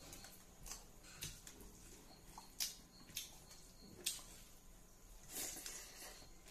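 Faint eating sounds: fingers mixing rice and smoked pork in a steel bowl, with a few sharp little clicks scattered through and a softer rustle near the end.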